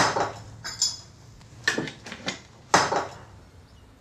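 Metal and glass kitchenware being handled on a counter: the parts of a stovetop moka pot and a glass coffee jar knocked and clinked down, about five sharp clinks over the first three seconds, then quieter.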